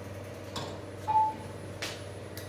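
A single short electronic beep about a second in, over a steady low hum, with two brief scratchy sounds either side of it.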